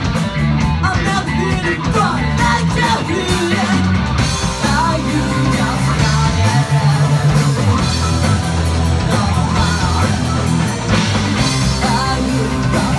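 Live rock band playing in a small club: sung lead vocal over electric guitars, bass and drums, heard through the room.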